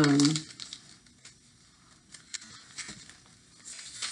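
Faint rustling and crinkling of a hand-rolled paper tube being handled, with a few soft crackles scattered through.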